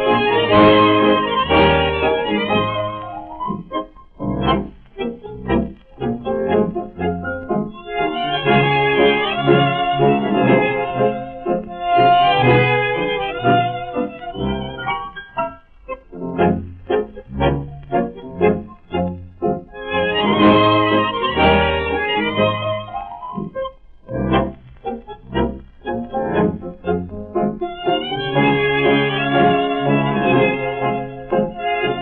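Instrumental music score: sustained chords alternate with passages of short, detached notes.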